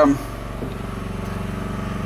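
Small inverter generator's engine running steadily, a low even hum with a fast regular pulse, while it charges a battery.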